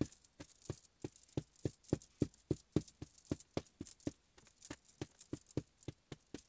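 A black marker tapped again and again onto a whiteboard to make dots: a quick, even run of light taps, about three or four a second.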